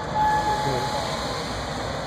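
Diesel-electric freight locomotives idling with a steady low rumble. About a quarter second in, a single steady high tone sounds for just under a second.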